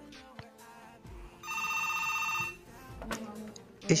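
A phone ringing: a steady, trilling electronic ring tone that sounds once for about a second, over soft background music.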